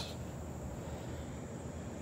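Steady background noise with a faint, thin high-pitched tone running through it; no distinct sound event.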